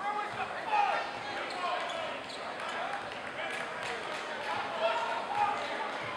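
A basketball being dribbled on a hardwood court, with the voices of players and spectators in the gym around it.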